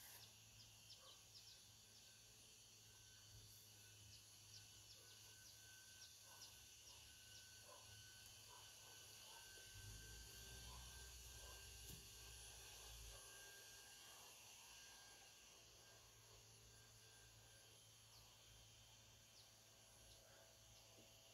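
Near silence: faint outdoor ambience with a few light clicks and a brief low rumble about halfway through.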